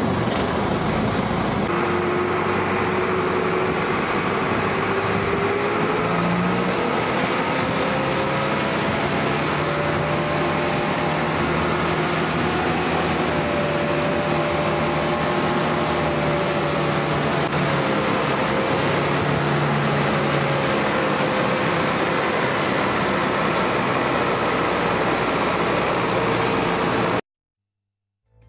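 A boat's engine running under way, over a constant rush of water and wind. Its pitch climbs over the first several seconds and then holds steady. The sound cuts off suddenly near the end.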